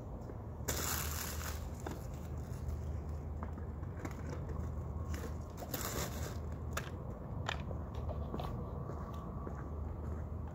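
Rustling and a few sharp clicks from gear being handled, over a steady low hum.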